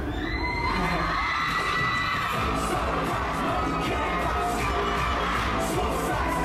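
A concert audience screaming over a pop song with a steady beat; the screams rise and are held for a few seconds.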